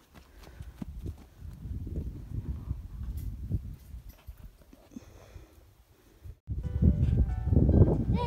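Footsteps running on a dirt road, heard as uneven low thuds. About six and a half seconds in the sound cuts out for a moment, then music with held notes comes in over a loud low rumble.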